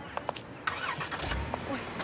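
A few sharp clicks from a car door being handled, then a low rumble a little past the middle as the taxi's engine starts.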